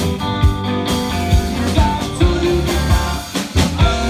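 Live blues band playing: two electric guitars, electric bass and drum kit, with a steady drum beat and held guitar notes. The band drops out briefly about three and a half seconds in, then comes back in.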